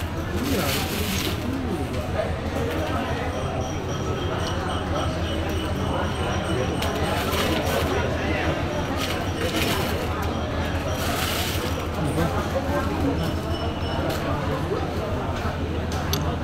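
Indistinct background voices of a busy market hall over a steady low hum, with a few brief clinks of metal-set gemstone rings being handled in their tray, about a second in, around the middle, and again about eleven seconds in.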